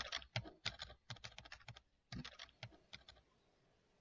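Quiet, rapid keystrokes on a Lenovo laptop keyboard: an irregular run of clicks that stops a little after three seconds in.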